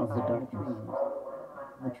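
Overlapping spoken-voice fragments in an electroacoustic tape composition, several pitched voices layered and gliding at once without clear words.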